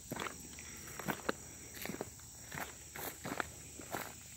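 Footsteps on crushed-stone railroad track ballast, about two steps a second, as a person walks along the track.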